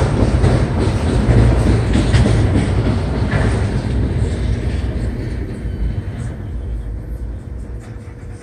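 Rolling noise of a freight train's autorack cars passing, the wheel and car rumble fading steadily as the end of the train goes by. A faint steady grade-crossing signal tone remains in the last couple of seconds.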